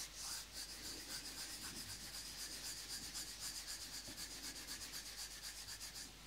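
Palms rubbed briskly together, an even, rapid back-and-forth at about five strokes a second that starts abruptly and stops abruptly.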